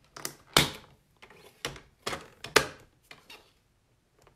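Paper trimmer with its scoring blade being worked over cardstock: a run of sharp plastic clicks and light knocks, the two loudest about half a second and two and a half seconds in.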